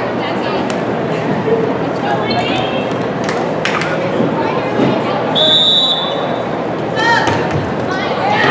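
Voices of spectators and players echoing in a gymnasium, with a few sharp knocks of a volleyball being struck. A referee's whistle is blown once, a steady high note lasting about a second just past the middle, then another ball strike follows.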